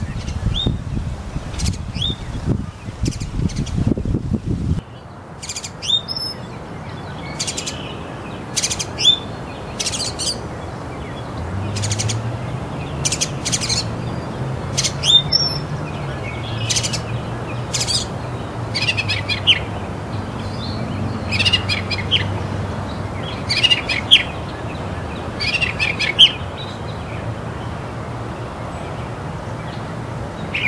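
Aseel chicks peeping: short high peeps, each falling in pitch, repeated irregularly with a few louder ones. A low rumble sits under the first few seconds and a low steady hum under the later part.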